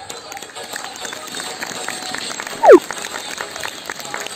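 Background chatter from an outdoor audience, with a short, loud squeal falling sharply in pitch about two-thirds of the way through.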